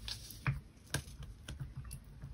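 A few light taps and clicks, about half a second apart, from hands and a paper-stick cotton bud working on an inked linocut block lying on paper.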